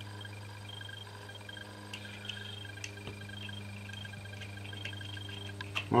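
Faint, steady drone of an aircraft passing overhead under a constant low hum, with a few small clicks from fingers handling a small metal switch knob.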